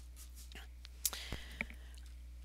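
A quiet pause in speech: a speaker's faint breathing and a few soft mouth clicks about a second in, over a steady low electrical hum.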